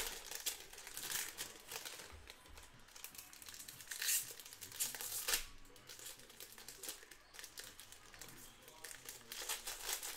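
Baseball card pack wrappers crinkling and being torn open by hand, in irregular bursts. The loudest rips come about four and five seconds in.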